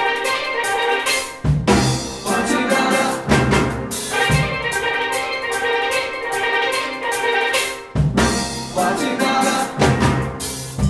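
A steel band playing a cha-cha-chá: tenor, double-second and guitar pans over six-bass pans, with drum kit and Latin hand percussion (cowbell, timbales, maracas, güiro). The bass pans come in about a second and a half in and drop out briefly twice.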